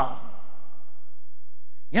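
A short pause in a man's speech through a microphone: his last word fades away in the hall's echo, leaving only a faint steady low hum, and he speaks again near the end.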